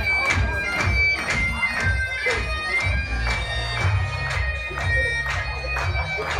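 Bagpipe music for highland dancing: a piped melody over a steady low drone, with a regular beat of about three strokes a second.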